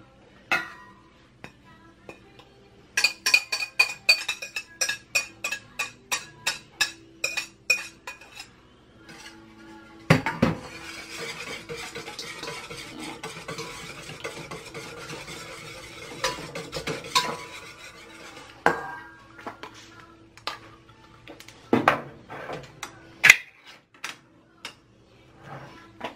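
Wire whisk beating egg yolks in a stainless steel mixing bowl. First comes a run of quick taps against the bowl, about three a second, each leaving a short metallic ring. Then follow about eight seconds of steady rapid whisking, and a few scattered clinks near the end.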